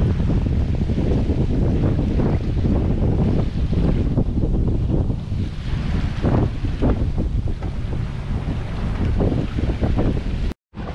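Wind rumbling unevenly on the microphone aboard a sailboat under sail with its engine off, with water washing along the hull.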